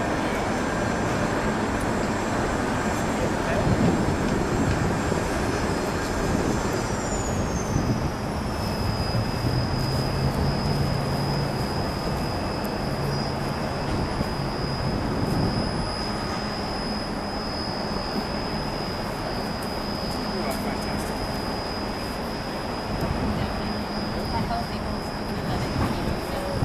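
A machine running steadily, with a high whine that slides down in pitch about seven seconds in and then holds level.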